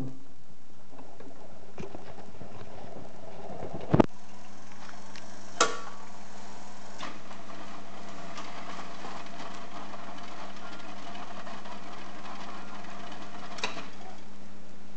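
Rock-Ola Max 477 jukebox's record-changing mechanism running between records: a steady motor hum with two sharp mechanical clunks about four and five and a half seconds in, and lighter clicks later on.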